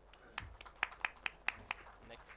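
Sparse applause: a handful of sharp, separate hand claps, about five a second.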